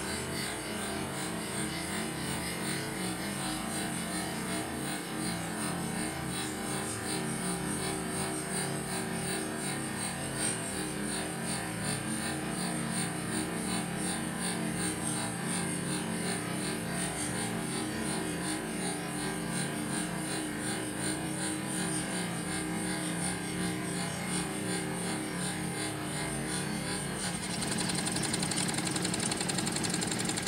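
Wilesco live-steam model engines running together: a steady hum with fine, fast, even ticking of their exhausts and moving parts. The sound grows louder and busier near the end.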